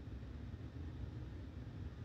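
Quiet room tone in a pause between speech: a steady low hum with a faint even hiss, and nothing else happening.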